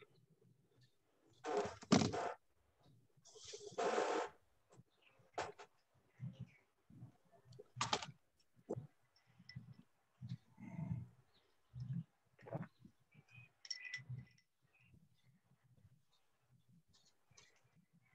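Scattered faint handling noises over open video-call microphones: two short rustling bursts in the first few seconds, then sharp clicks and a string of soft low knocks and bumps.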